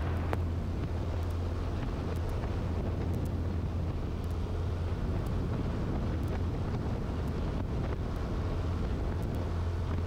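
1948 Ercoupe 415-E's Continental O-200 four-cylinder engine running at takeoff power, a steady low drone with wind rush over it.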